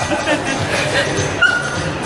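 Laughter over the chatter of a crowded hall, with a short high steady note about one and a half seconds in.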